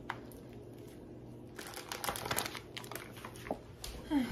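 Plastic meat packaging crinkling and rustling as a raw pork shoulder is unwrapped and handled on a wooden cutting board. The crackling starts about a second and a half in, after a single light click.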